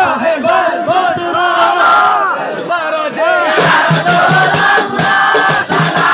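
A crowd of men singing and shouting together in loud chorus. A little over halfway through, rebana frame drums join in with rhythmic strokes and a dense jingling rattle, and the group singing carries on over them.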